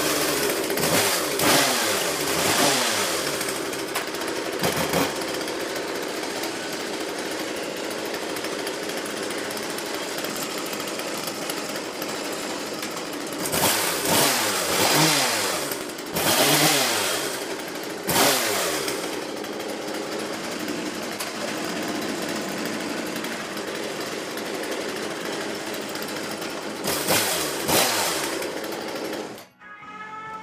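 Husqvarna Model 41 two-stroke chainsaw running after repair, heard at double speed. It is blipped on the throttle several times, each rev falling back in pitch, and the sound stops abruptly near the end.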